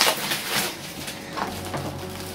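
Clear plastic wrapping crinkling and rustling as it is torn and pulled off a cardboard kit box, with a few sharp crackles.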